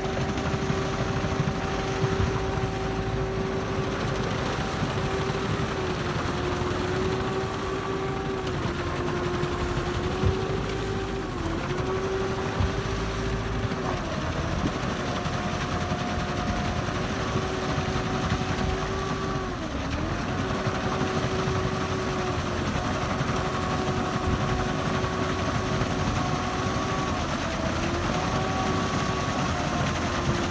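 Sherp amphibious ATV's diesel engine and drivetrain running under load as its big low-pressure tyres churn through slush and broken lake ice: a steady high mechanical whine that sags briefly in pitch about five times, over a low rumble and splashing.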